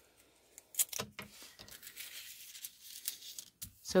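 Thin sheet of hot foil crinkling and rustling as hands press and smooth it flat over cardstock, with a few sharp crackles about a second in.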